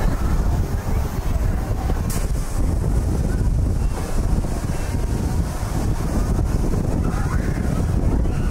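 Wind rushing over the microphone of a rider in a circling Astro Orbitor rocket, a steady low rumble, with a brief sharp click about two seconds in.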